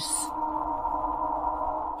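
Background music: a steady, sustained drone of several held tones.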